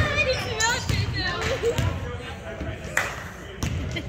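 Basketball bouncing on a hardwood gym floor during play, with sneakers squeaking and players' voices echoing in the large hall. A sharp thud comes about three seconds in.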